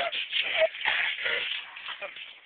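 Scuffling and shuffling of bodies and clothing as people wrestle on the floor, with faint voices under it.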